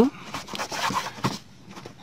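A cloth rag wiping over wet windshield glass to dry it: a soft rubbing and scuffing noise in the first second or so, fading after that.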